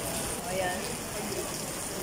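Heavy rain falling steadily, a dense even hiss, with faint voices underneath.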